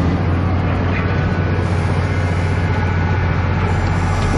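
Diesel engine of a 5-ton knuckle-boom grab truck running steadily with a deep, even hum, driving the hydraulic crane as the grapple is swung.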